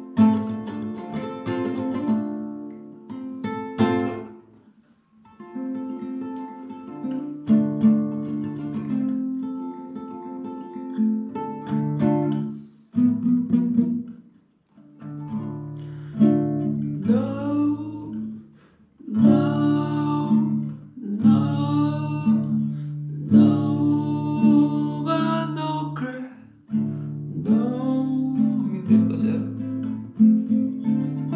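Acoustic guitar with a capo, fingerpicked, with two short pauses; from about halfway a man sings along over it.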